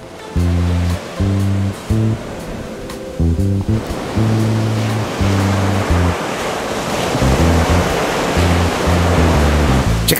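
Ocean surf washing onto a sandy beach, coming in about four seconds in and growing louder, under background music with a repeating bass line.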